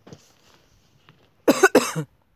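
A person close to the microphone coughing twice in quick succession, near the end.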